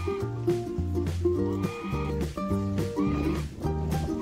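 Background music with a steady, repeating bass line, and a white domestic goose honking several times over it.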